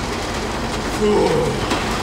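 Steady road and engine noise inside a moving car's cabin, with a brief low murmur of a voice about a second in.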